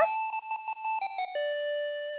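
Bell-like chime tones in background music: a run of short higher notes, then one held lower note from about two-thirds of the way in.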